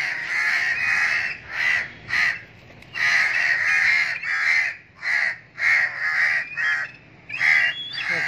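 Several crows cawing again and again, one call after another in quick succession, with a couple of short pauses.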